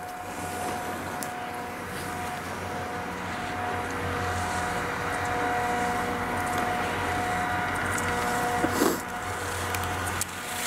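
A steady mechanical hum holding several even tones, under a rushing noise that grows a little louder toward the middle.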